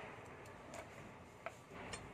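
Faint, low background with a few soft, short ticks and clicks scattered through it.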